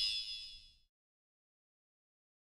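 High metallic ringing tail of a logo sound effect, fading out in under a second and followed by silence.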